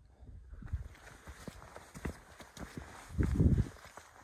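Hiking boots stepping on a rocky mountain path, a series of short, irregular knocks on stone. A louder low rumble comes briefly a little after three seconds in.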